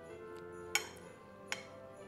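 Chopsticks clicking against a ceramic bowl twice, the first click the louder, over soft background music.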